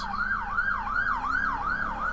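Emergency vehicle siren on a fast yelp, its pitch sweeping down and up about three times a second, from a vehicle speeding past.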